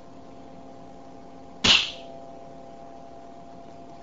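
Edgerton's Boomer coil firing once, about one and a half seconds in: a single sharp bang that dies away quickly. The capacitor bank is dumping its charge through the coil, and the induced current pulse throws up the edge of an aluminium foil disc and shapes it.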